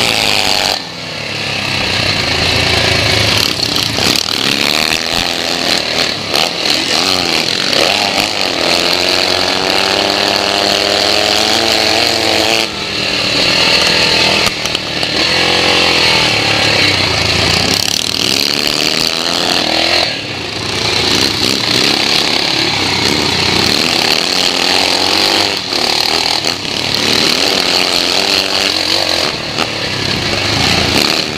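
Single-cylinder four-stroke engine of a 441 BSA Metisse scrambler racing over rough ground, its revs climbing and falling as the throttle is worked, with a few brief dips where the rider rolls off before opening up again.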